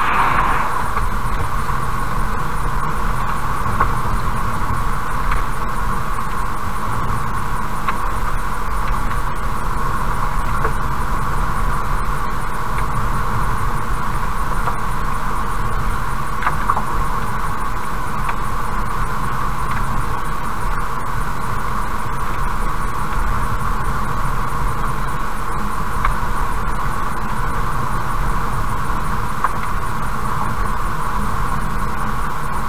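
Car driving at about 55 km/h, with steady road and engine noise heard from inside the cabin through a dashcam. An oncoming semi-truck rushes past at the very start.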